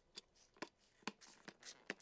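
Hand trigger spray bottle misting water onto the soil of newly sown seed cells: a run of faint, short spritzes, about six in two seconds.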